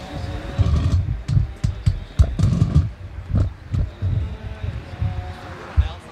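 Wind buffeting the camera microphone in irregular low gusts.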